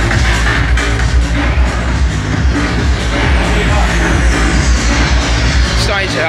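Loud trance-style electronic dance music played over a club sound system, with a heavy, steady bass beat.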